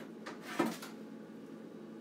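A few light knocks and clatters, the loudest about half a second in: a plastic pottery wheel bat being picked up and handled.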